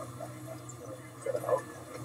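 Faint, indistinct voices over a low steady hum, with a brief murmur about one and a half seconds in.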